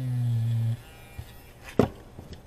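Battery-powered electric eraser whirring against the paper to erase a coloured-pencil slip. The pitch dips as the tip meets the page, and the whir stops abruptly under a second in. A sharp knock follows near the end as the eraser is set down on the table.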